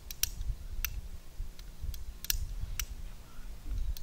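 A flint spark striker scraped again and again at the mouth of an exothermic welding mold to light the starter powder for a copper ground-rod weld. It gives about seven short, scratchy clicks at uneven intervals over a low rumble.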